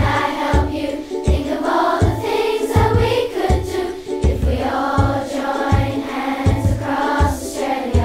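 A children's choir singing a song over backing music with a steady low drum beat, about one beat every three-quarters of a second.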